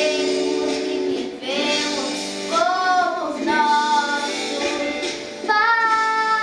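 A young girl singing a song over instrumental accompaniment. About five and a half seconds in she goes into a loud, long held note.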